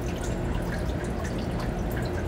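Steady background room noise with a low hum and no distinct events.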